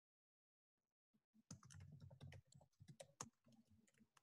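Near silence, then from about a second in a run of faint, quick clicks of typing on a computer keyboard, heard through a video-call microphone. The clicks die away about a second before the end.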